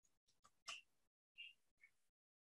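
Near silence with a few faint, short clicks, the sound of typing on a computer keyboard.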